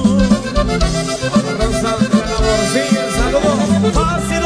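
Norteño music: an accordion playing the melody over bass and a steady beat, in an instrumental passage without singing.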